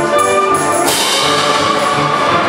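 Concert band playing loudly, brass over the rest of the band. About a second in, a clash of hand-held crash cymbals comes in and keeps ringing under the band.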